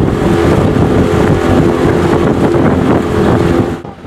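A motor running steadily with a constant hum under loud rushing noise, cutting off just before the end.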